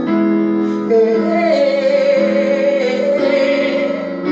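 A woman singing a slow worship song into a microphone, holding long notes with vibrato over sustained instrumental chords.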